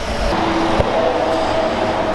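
Loud street-side vehicle rumble with faint steady whining tones, lower at first and higher about a second in.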